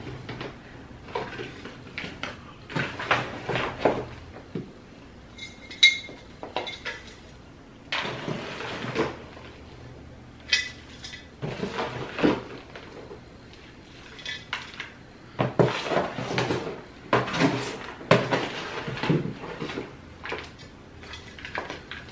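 Potting mix being scooped from a plastic tub and poured into a terracotta pot: irregular gritty rustles and pours, scrapes of the scoop against the tub, and a few light knocks.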